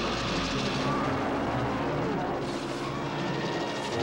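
Film sound effects of a giant ape wrestling a giant snake: a dense, rough, noisy din that cuts in suddenly with a low thud, with short high hiss-like bursts in the second half.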